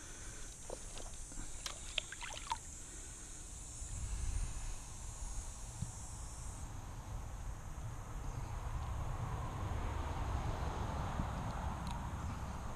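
Shallow river water sloshing and trickling as an angler wades through it, louder in the second half, over a low rumble of wind on the microphone.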